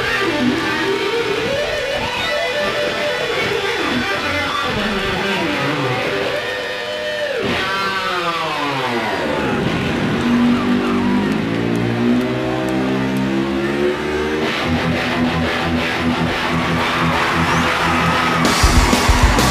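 Electric guitar solo played live with a band. The notes bend and glide. About seven seconds in, the pitch swoops steeply down and climbs back up. After that come quick runs of repeated notes, with the drums growing stronger over the last few seconds.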